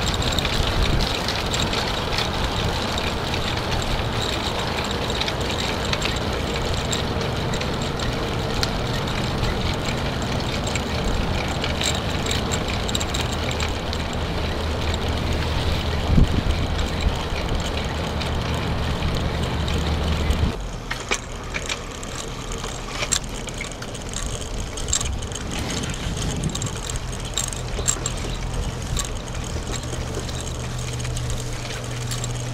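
Steady rushing noise of riding a bicycle along a paved path, wind and tyre noise with a low hum underneath. About two-thirds through it drops suddenly to a quieter rush with scattered ticks and rattles.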